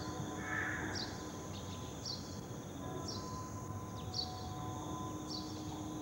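A high chirp repeating about once a second, insect-like, over a low background hum and faint sustained tones.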